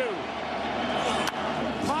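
Baseball stadium crowd noise under the TV commentary, with one sharp crack just over a second in as the batter swings and pops the pitch up.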